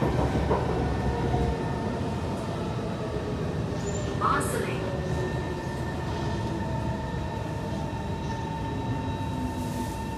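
Inside a Kawasaki C151 metro car: steady running noise, with the traction motor's electric whine slowly falling in pitch as the train slows into a station. There is a brief high squeal about four seconds in.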